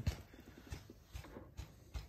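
A handful of faint, irregular clicks and soft knocks from handling a large plastic hand syringe that is pulling vacuum on a diesel fuel filter line to draw fuel through an empty system.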